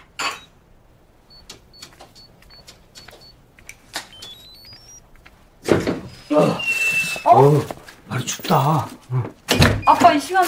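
Electronic keypad door lock: a string of single high beeps as the code is punched in, then a quick rising run of tones as it unlocks. About six seconds in the door clunks open, followed by louder rustling and voices.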